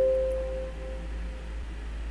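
Computer system notification chime sounding as a 'scroll created successfully' completion dialog pops up, marking the end of the generation run: one soft bell-like tone that fades over about a second and a half, over a steady low hum.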